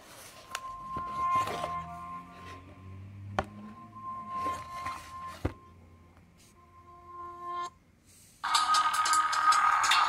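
Electronic music played through the Ghia A7 tablet's small built-in loudspeaker: sparse, thin held notes with a few clicks at first, a short drop-out around the eight-second mark, then much louder and fuller music for the last second and a half.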